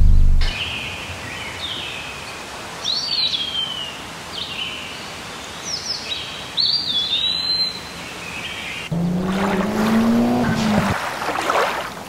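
Birds chirping and singing, repeated short calls that sweep downward, over a steady outdoor noise bed. About nine seconds in, a louder motor sound comes in, rises in pitch and drops away about two seconds later.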